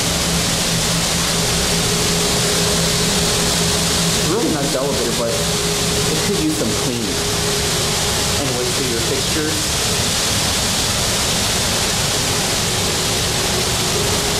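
Steady, loud rushing noise with a low hum under it. Muffled voices come through briefly in the middle.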